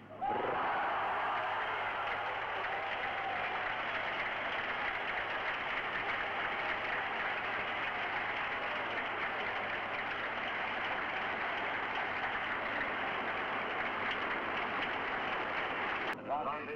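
Large crowd of tennis spectators applauding a won point. The applause starts suddenly and keeps up steadily throughout.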